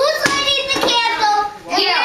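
Young children's high voices calling out excitedly without clear words, with a few sharp smacks of hands in the first second.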